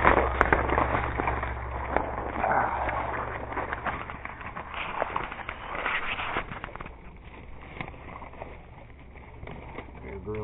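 Footsteps crunching through dry fallen leaves and brush, with many small crackles and twig snaps, growing quieter after about seven seconds.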